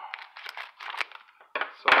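Clear plastic wrapper of a pack of hockey cards crinkling in a series of short rustles as the pack is torn open and the cards are pulled out.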